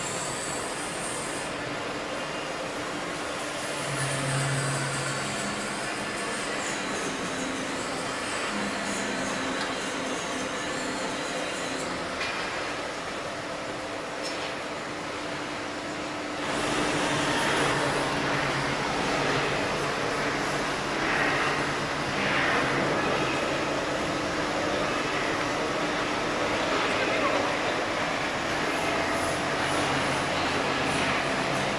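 Perun MDS-170 electric multi-rip circular saw machine (two 45 kW motors) running with a steady hum. About halfway through it gets louder and rougher.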